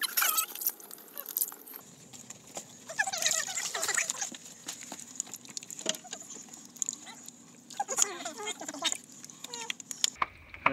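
Muddy water splashing and sloshing as a large quartz crystal is rubbed and rinsed by hand in a pool, with scattered sharp clicks.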